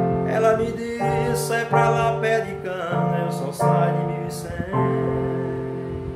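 Electronic keyboard playing sustained chords while a man sings along, the last chord held and fading away near the end.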